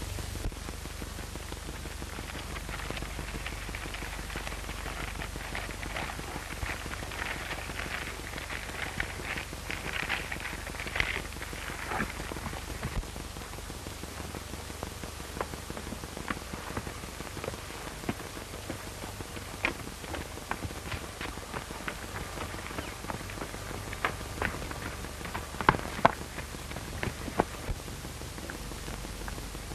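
Steady hiss and crackle of an old 1930s optical film soundtrack, with scattered sharp clicks, several of them near the end.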